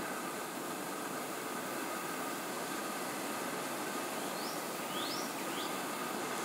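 Steady outdoor background hiss at a deer enclosure, with three short, high rising chirps in the last two seconds.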